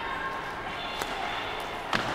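Ice hockey play in an indoor rink: steady arena ambience with two sharp clacks of stick and puck, one about a second in and one near the end.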